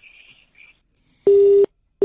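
Telephone busy tone on the phone line after the call is hung up: short beeps of one steady low tone in an even on-off rhythm, the first a little past the middle and the next starting at the end.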